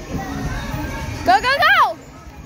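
A girl's high-pitched squeal, swooping up and down in pitch about a second and a quarter in and cutting off after half a second, over the background voices of children playing.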